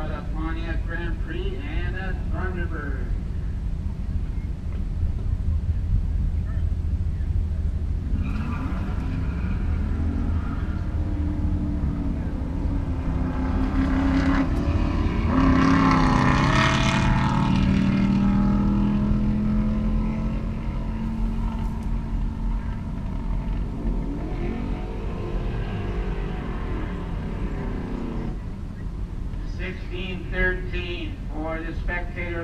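Vehicle engines idling and rumbling in a drag-race staging line. About halfway through, one engine's note rises and swells to the loudest point, then fades as it moves off.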